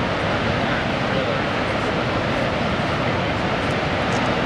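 Steady rush of water from the Horseshoe Falls at Niagara, a continuous even roar without breaks.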